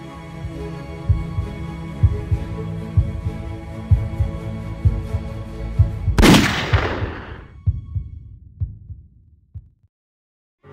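Trailer score: a sustained music drone with a heartbeat-like pulse of paired low thumps about once a second, then one loud sudden hit about six seconds in that rings and dies away to silence.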